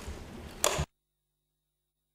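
A short sharp click from the judge's desk microphone being switched off, after which the microphone feed cuts out to dead silence.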